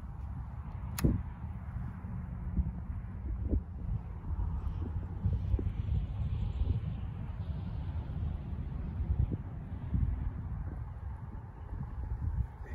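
Wind buffeting the microphone: a steady, uneven low rumble, with one sharp click about a second in.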